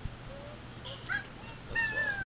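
A person's high-pitched, nasal vocal noises: short squeaks about a second in, then a longer held squeal that falls slightly near the end, a closed-mouth reaction to the taste of a drink held in the mouth.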